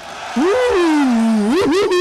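A man's long, drawn-out wordless vocal exclamation starting about a third of a second in: it rises in pitch, slides slowly down, then swoops up briefly again near the end.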